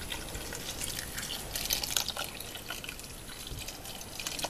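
Cold water pouring from a plastic pitcher into a steel pot of salted, chopped vegetables, covering them, a little louder about one and a half to two seconds in.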